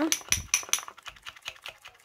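Metal spoon stirring a thick face-mask paste in a ribbed glass bowl, clicking and clinking against the glass. The clinks come quickly in the first second, then more sparsely.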